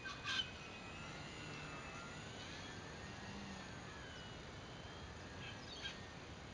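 Faint, distant whine of an RC Extra 300S model plane's motor and 10x4.7 propeller in flight, its pitch drifting up and down as the plane manoeuvres. A short sharp sound comes about a third of a second in, and another just before the end.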